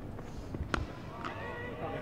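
Cricket bat striking the ball once, a single sharp knock about three-quarters of a second in, followed by faint voices calling as the batsmen set off for a quick run.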